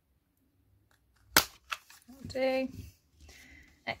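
A handheld paper circle punch snapping down through paper: one sharp click about a second and a half in, with a few small ticks after it. A short hummed voice sound follows.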